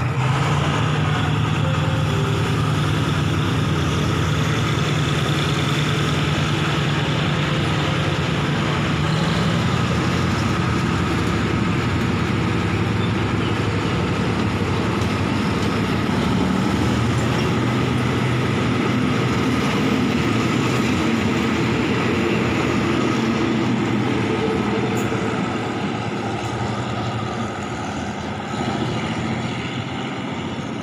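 Passenger coaches of a diesel-hauled Thai ordinary train rolling past close by, a steady running noise of wheels on rails with a low hum. It eases off near the end as the last coach goes by and the train draws away.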